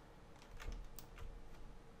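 A few faint clicks from computer controls, four or so within about a second, over a low steady hum.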